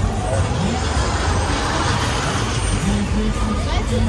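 Busy funfair midway ambience: crowd voices over a steady low rumble of rides. A rushing hiss swells and fades about halfway through.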